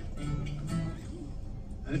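A few soft acoustic guitar notes ringing, growing quieter toward the end.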